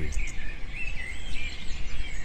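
Background birdsong: many small birds chirping and twittering continuously over a low, steady rumble of outdoor ambience.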